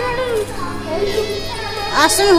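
Children's voices chattering and calling in a large hall, with steady background music underneath.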